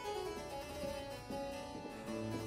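Harpsichord playing quiet sustained continuo chords, moving to a new chord a little past halfway.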